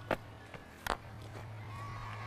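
Cricket bat striking the ball once, a single sharp crack a little under a second in, over a faint steady hum and low crowd noise.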